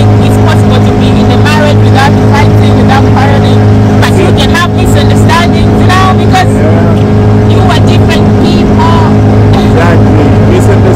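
A small boat's motor running loud and steady at constant speed as the boat is under way, a continuous low drone.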